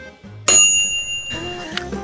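A bright bell-like ding sound effect about half a second in, ringing for nearly a second, over background music with a steady low beat.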